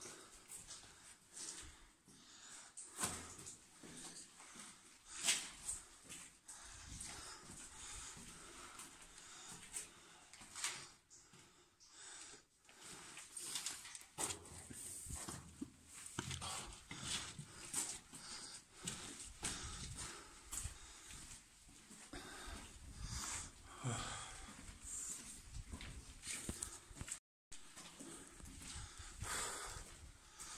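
A person's footsteps and hard breathing while walking up a long, sloping tunnel, with irregular short steps and scuffs throughout.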